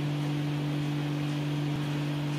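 A steady low hum with two unchanging tones over a constant background hiss.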